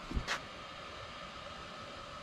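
Small electric blower fan on a charcoal smoker's temperature controller, running steadily: a low hiss with a thin, even whine. Two short knocks come about a quarter second in.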